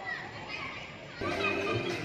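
Children and adults chattering and calling out. A little over a second in, music starts suddenly and loudly: the musical-chairs music that sends the players walking round the chairs.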